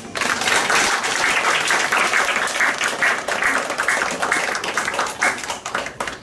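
Audience applauding at the end of a song, starting as the music stops and thinning out near the end.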